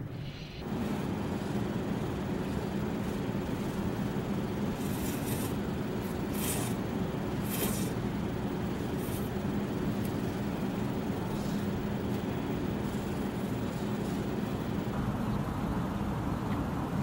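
A steady low hum with four short, airy slurps about five to nine seconds in, from someone eating instant noodles.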